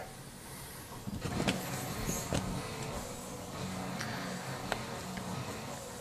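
A fabric wand cat toy flicked over carpet and against a wooden chair leg: a few light knocks and rustling, the clearest about a second and a half in and again a second later, over a low steady hum.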